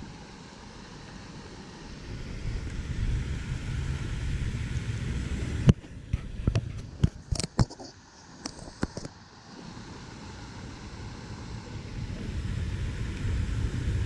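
Low rumble of wind buffeting the microphone, swelling and fading. About six seconds in comes a sharp click, then a scatter of clicks and ticks for a few seconds from handling the spinning rod and reel.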